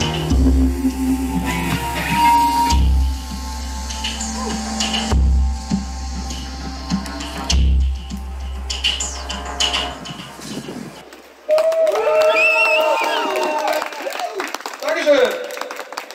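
Live band music on a stage PA, with deep drum beats about every two and a half seconds under held keyboard tones, ending about ten seconds in. After a short gap a man's voice comes over the PA with long, drawn-out notes.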